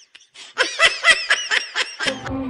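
High-pitched laughter: a quick run of short giggling bursts that starts about half a second in, after a brief lull.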